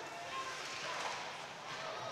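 Low, steady ice-rink ambience from a hockey game in play, an even hiss of skating and crowd noise with a few faint, brief tones in it.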